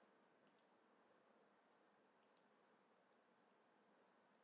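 Near silence, broken by two faint clicks of a computer mouse, one about half a second in and one a little after two seconds.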